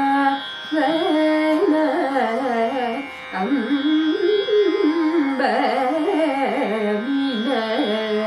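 A woman singing solo Carnatic music, her voice sliding and oscillating quickly around each note, with short breath breaks about half a second and three seconds in. A steady drone sounds beneath the voice.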